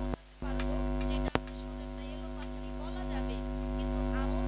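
Steady electrical mains hum from a stage microphone and sound system, with faint voices in the background and one sharp click a little over a second in.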